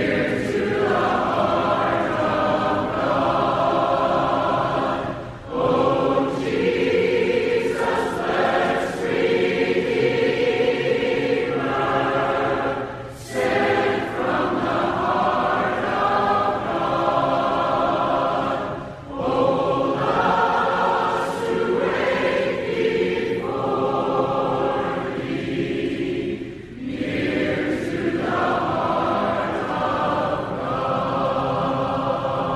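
A choir singing a hymn in several voice parts, in long phrases broken by brief pauses every six or seven seconds.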